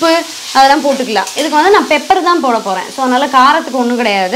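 Diced vegetables stir-frying over a very high flame in a stainless steel kadai, stirred and scraped with a steel slotted spatula, under a woman's talking voice.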